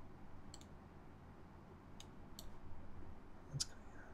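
A few separate clicks from a computer keyboard and mouse, spaced unevenly, the loudest a little past three and a half seconds in, over a faint low room hum.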